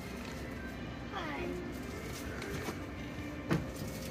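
Quiet room sound with a faint voice in the background about a second in, and a single knock near the end.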